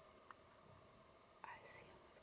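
Near silence with faint whispering: one short whispered sound about one and a half seconds in.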